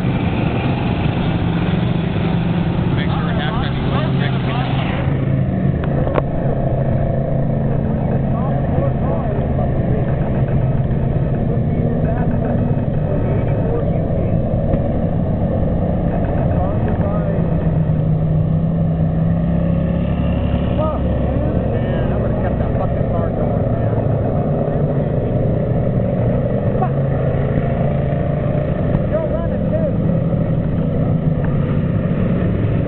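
Several enduro race cars' engines running without pause on a dirt oval, the engine pitch drifting up and down as cars pass, with voices mixed in.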